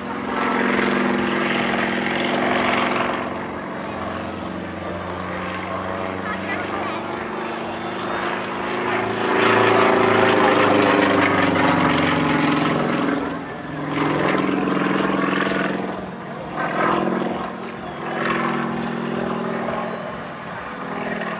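Aerobatic propeller plane's engine running at high power through aerobatic manoeuvres, its pitch rising and falling as the plane climbs, dives and tumbles, loudest about halfway through.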